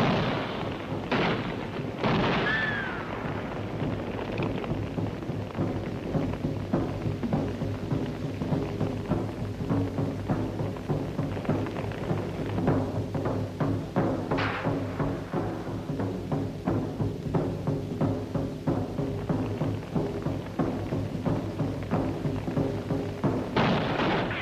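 Dramatic orchestral film score driven by heavy timpani, with many short sharp hits over it and a high gliding cry about two seconds in.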